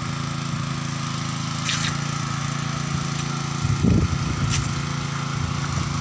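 A small engine running steadily at a constant pitch, with a brief crackling rustle of dead branches about four seconds in as they are pulled about in the mud.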